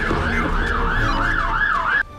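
Emergency-vehicle siren in a fast yelp, its pitch swooping up and down about three times a second over a low rumble, cutting off abruptly at the end.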